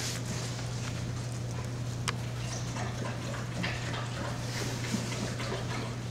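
Puppies moving and playing together in soft bedding, faint small scuffling sounds over a steady low hum, with one sharp click about two seconds in.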